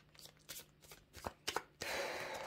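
Tarot cards being shuffled and handled: a few light card snaps and taps, then a longer rustle of cards sliding together near the end.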